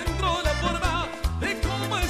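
Live cuarteto band playing: a lead vocalist sings a wavering melody over a pulsing bass line, drums and percussion.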